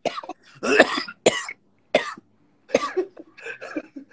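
A man coughing repeatedly, about six short coughs in a row.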